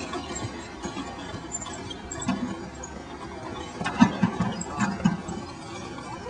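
Hands patting and pressing loose garden soil down around a newly planted tree, giving soft, irregular thuds and rustles, with a sharper knock about four seconds in.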